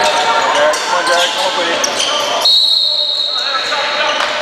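Players' voices and shouting over shoes scuffing and a ball bouncing on a hardwood court, then a referee's whistle sounds one long, steady blast about two and a half seconds in, stopping play.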